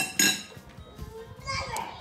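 A young girl's short, high-pitched squeal, just after a sharp knock at the start.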